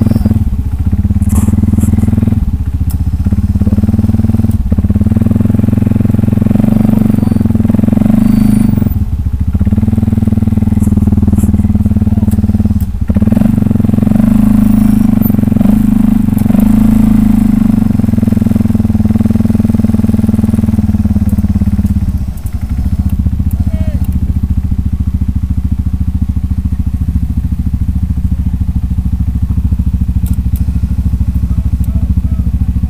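CFMOTO ATV's electric winch running with the engine going, pulling cable in several runs broken by brief stops. About 22 seconds in the winch stops and the engine idles on.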